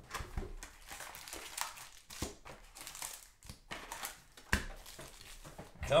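A cardboard hobby box of trading cards being opened and its foil-wrapped packs pulled out and stacked on the table: irregular crinkling and short clicks of cardboard and foil wrappers.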